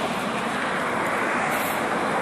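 Steady rushing noise of outdoor street ambience, traffic and wind on the microphone.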